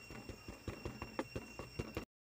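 Faint outdoor background: a steady high insect drone, likely crickets, with scattered faint clicks.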